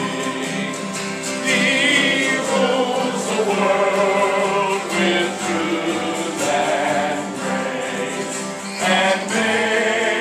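A group of voices singing a song together, accompanied by strummed acoustic guitars.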